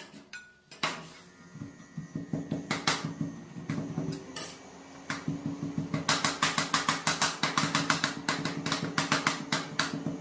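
Metal spatula blades chopping and scraping ice cream base on a stainless steel cold plate: a few scattered taps at first, then from about six seconds in a rapid run of clicking strikes, several a second. A steady low hum sets in about one and a half seconds in and carries on underneath.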